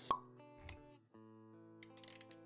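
Intro music with held notes, cut through by a sharp pop just after the start, which is the loudest sound, and a soft low thud a little later. The music briefly drops out about a second in and then returns.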